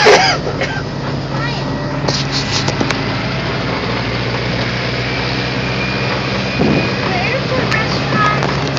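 Steady low engine hum of the vehicle towing a helicopter shell on a pull-around ride, heard from inside the shell.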